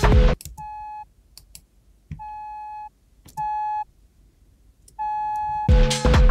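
A full electronic beat with drums cuts off just after the start. Then a single synthesizer note is played four times, each a steady beep-like tone held about half a second, the last two louder, with a few faint clicks between them. The beat comes back in near the end.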